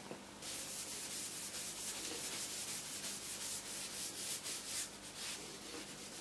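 A rag rubbing linseed oil into a hickory tool handle in quick back-and-forth strokes, a faint, steady hiss that starts about half a second in.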